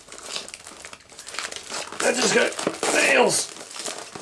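Plastic wrapping on a model kit crinkling and tearing as it is pulled open, busier and louder in the second half.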